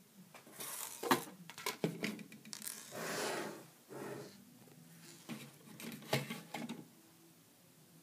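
Plastic Lego pieces clicking and rattling as a Lego ship model and a small Lego gun are handled and set down on a desk, with a short rush of noise about three seconds in. The clatter ends about seven seconds in.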